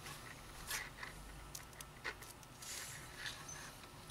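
Faint rustling and a few small clicks of braided PET cable sleeving and wire being handled and worked along by hand.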